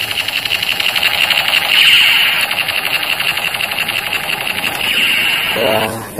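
Battery-powered light-up toy sniper rifle firing: a continuous, rapid buzzing rattle that holds steady and cuts off near the end.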